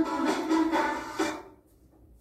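Recorded children's song, singing with instrumental backing, ending about a second and a half in.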